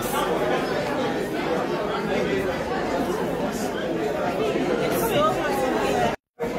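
Several people talking at once in a steady chatter, with no single voice standing out.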